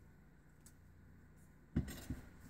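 Near silence, then near the end a sudden burst of handling noise as hands pick up and work a ribbon korker bow over a cutting mat.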